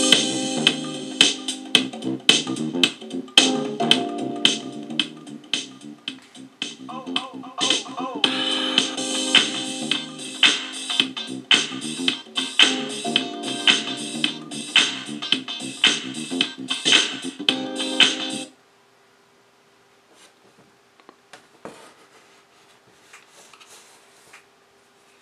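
Music with a steady beat played through the Bluetooth light ball's built-in speaker at maximum volume. It cuts off suddenly about three-quarters of the way through, leaving a faint steady hum and a few soft clicks.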